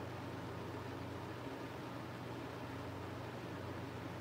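Electric fan running steadily: an even hiss with a low hum.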